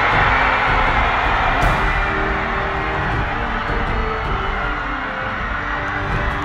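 Baseball crowd cheering after a game-winning home run. The cheer is loudest at first and slowly fades, over background music with steady held notes.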